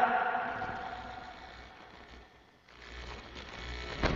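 A man's voice with echo over a voice-chat line fading away over about two seconds, then a moment of near silence, then faint hum and hiss from an open microphone.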